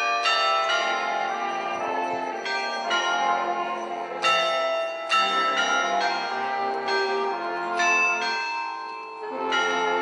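Church bells pealing: several bells struck one after another, each new stroke starting sharply every half second to a second while the earlier ones are still ringing.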